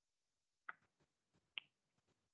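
Near silence broken by a few faint, sharp clicks, the two loudest a little under a second apart.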